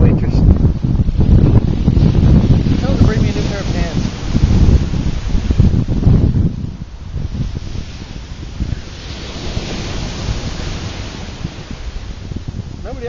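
Ocean surf breaking and washing up a sandy beach, with heavy wind buffeting on the microphone for the first half. After about six seconds the wind drops, and the hiss of the wash swells again near the end.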